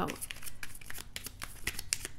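A deck of tarot cards being shuffled by hand: an irregular run of quick papery flicks and snaps.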